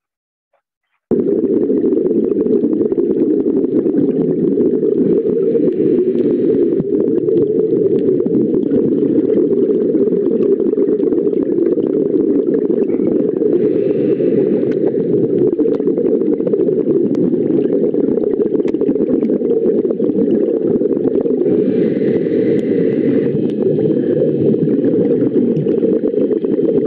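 Underwater recording of the sea's natural sound, played back over a video call: a loud, dense low noise with a constant crackle of fine clicks, starting suddenly about a second in.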